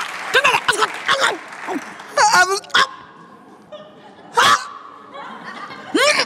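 Applause fading out, then a few short wordless vocal outbursts and laughter, with quiet gaps between them.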